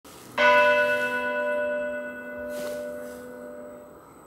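A church bell struck once about half a second in, ringing on and slowly fading.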